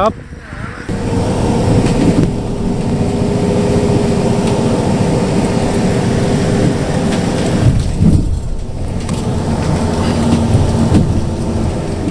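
Engine and road noise heard from inside a moving bus: a loud, steady rumble with a constant low hum, starting about a second in and easing briefly around eight seconds.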